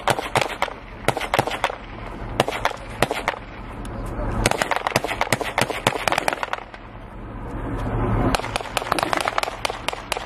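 Small-arms gunfire: irregular sharp shots, several a second in places, over a low rumble that swells toward the end.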